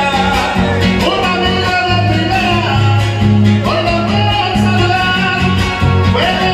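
Live son huasteco played by a string trio: strummed and plucked guitars keeping a steady dance rhythm, with a melody line and singing over it.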